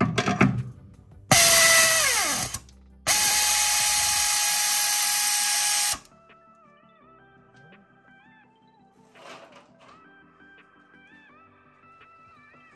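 A power drill boring out a bolt hole in a car's steel frame, run twice. A first burst of about a second drops in pitch as it winds down; a second runs steadily for about three seconds and stops abruptly. Faint background music follows.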